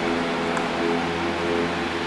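Chalk writing on a blackboard, with a couple of faint light taps, over a steady low hum and even hiss.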